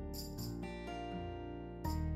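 Soft background music with plucked guitar notes.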